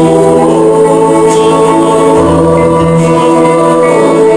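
Live band performing a sung song: voices holding long notes over keyboards, accordion, guitar and bass.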